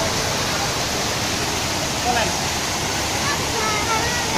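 Fountain jets splashing steadily into a shallow pool: a continuous, even rush of falling water.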